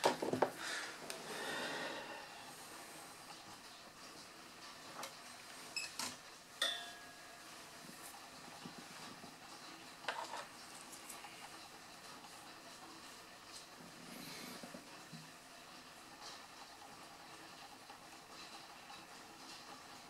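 Quiet handling sounds over faint room tone: a few small clicks and knocks as a soldering iron and guitar wiring parts are picked up and moved about on the table.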